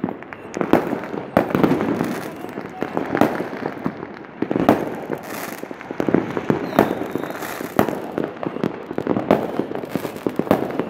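Fireworks and firecrackers going off all around: an irregular run of sharp bangs and pops, about two a second and some much louder than others, over a steady background of fainter bursts.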